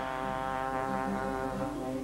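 Jazz orchestra's brass section holding a sustained chord, with a new low note entering near the end.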